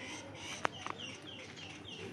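A bird calling in a quick run of short, falling high notes, about four a second, in the second half. A single sharp click a little after half a second in is the loudest sound.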